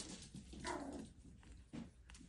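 Pomeranian puppy giving a faint, short whine about half a second in.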